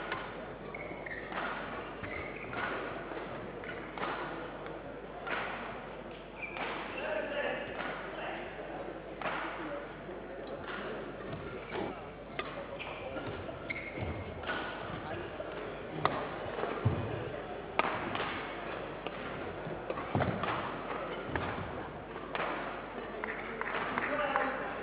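Badminton hall ambience: a scattered run of sharp racket strikes and thuds from a rally on a neighbouring court, over a murmur of voices echoing in the large hall.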